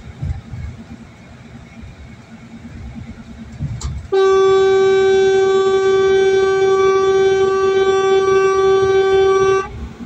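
A vehicle horn held in one long, steady blast of about five seconds, starting about four seconds in and cutting off near the end, over the low road noise of a car driving on a highway.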